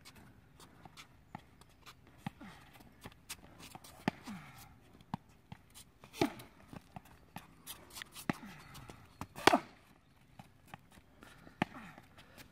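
Footsteps and scattered sharp knocks and taps of play during a rushball rally, with one louder impact about nine and a half seconds in.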